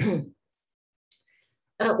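A woman's speaking voice trails off in the first moment, then a gap of near silence broken by one short, faint click about a second in, before her voice resumes with a hesitant "uh" near the end.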